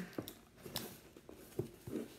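A cardboard shipping box being turned over and handled by hand on a tabletop: a few quiet, separate taps and rubs of cardboard.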